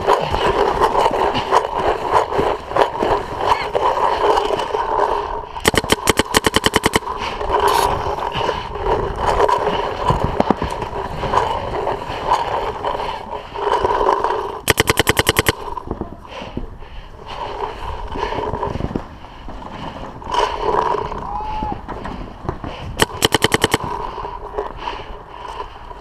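Electronic paintball marker firing fast strings of shots, in four separate bursts of a second or less: the longest about a quarter of the way in, a short one soon after, one a little past midway and one near the end.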